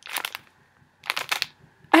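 Plastic wrapping of a packaged piece of cross-stitch fabric crinkling as it is handled, in two short bursts: one at the start and one about a second in.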